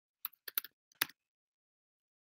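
About five short, sharp clicks on a computer keyboard in the first second, the sound of keys being pressed, with acrylic nails possibly adding to the click.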